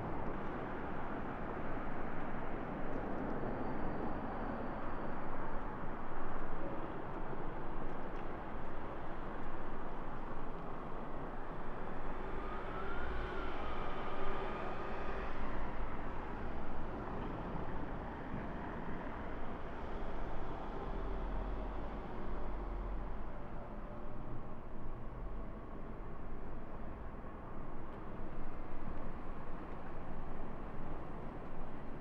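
Steady city street traffic noise, a continuous rumble of passing vehicles, with a faint engine note rising and falling about halfway through.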